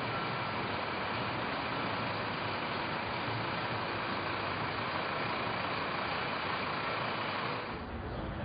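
Steady city street traffic noise. It drops away shortly before the end, giving way to a quieter, duller sound.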